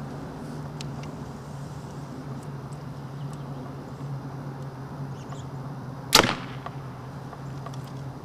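A 70-pound Elite Archery Hunter compound bow shooting an arrow: one sharp snap of the string about six seconds in, after a quiet draw.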